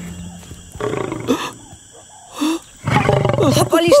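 A lion roaring in several separate calls over a few seconds.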